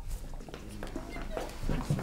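Quiet room sound with a few faint scattered footsteps and shuffles, under a low murmur of voices, as a group of people moves about the room.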